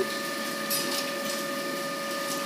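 Textile mill machinery running: a steady hum with a faint, light mechanical clatter.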